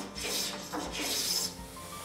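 Small hand plane taking shavings off the edge of a wooden pattern, two strokes planing it to a marked line, the second longer than the first.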